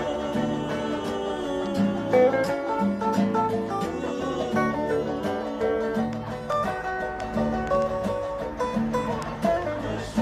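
Acoustic guitar strummed in a steady rhythm, played live and unamplified.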